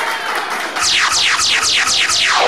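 DJ sound effect over the PA: a rapid run of falling electronic sweeps, about five a second, starting about a second in, with music.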